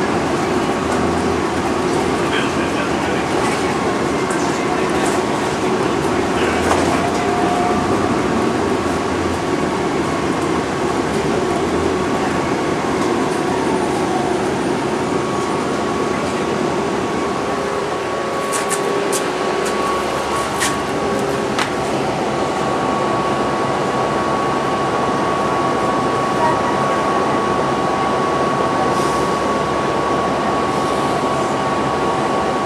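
Steady running noise heard inside a moving TTC transit vehicle: a low rumble under a thin, steady whine that firms up about halfway through, with a few brief rattles or clicks.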